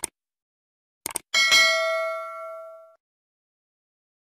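A bell struck once about a second and a half in, just after two quick clicks, ringing and fading away over about a second and a half.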